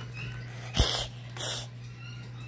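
A child's voice imitating a cat's hiss for a toy cat: two short, breathy hisses about half a second apart, the first starting with a low pop.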